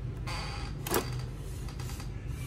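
Hands working inside a Canon G-series inkjet printer's carriage: a short scraping rustle of the printhead and its flat ribbon cable, then one sharp click about a second in.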